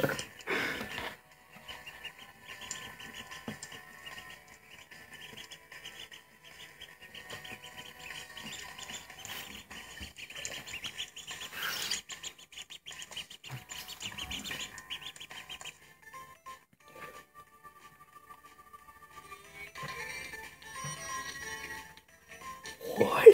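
A duckling peeping repeatedly in quick high chirps, with background music underneath.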